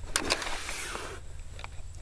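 About a second of rustling and scraping from handling and movement against the nylon and mesh of a backpacking tent, then quieter, over a faint low rumble.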